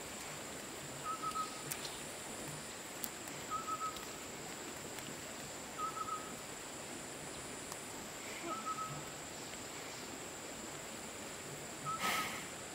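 A bird repeating a short whistled call about every two and a half seconds, over a steady high-pitched whine.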